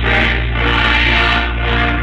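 Church choir singing a gospel selection on an old broadcast tape, full and sustained, sounding dull with no highs.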